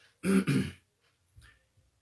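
A man clearing his throat once, a short two-part 'ahem' that lasts about half a second.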